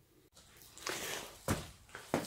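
Quiet workshop with faint shuffling and a single short knock about one and a half seconds in.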